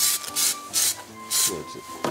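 Aerosol spray can of adhesion primer hissing in about four short bursts, roughly half a second apart, as the primer is misted onto plastic parts.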